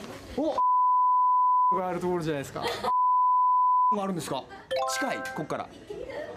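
Two censor bleeps, each a steady 1 kHz tone lasting about a second, replace the speech while they sound, with men talking between and after them. Near the end comes a brief multi-note electronic sound effect.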